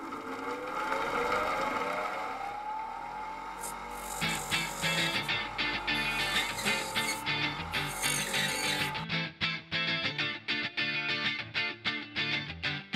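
Bench grinder motor spinning up, its whine rising in pitch and then holding steady, until it drops out about nine seconds in. From about four seconds in, background guitar music with a steady beat comes in and continues to the end.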